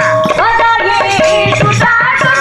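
Instrumental interlude of Odia pala music: a melody of held notes sliding from one pitch to the next over mridanga drum strokes, with a steady jingling rattle.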